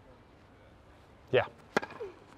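A tennis racket strikes the ball on a serve, a single sharp pop near the end, after a stretch of near quiet.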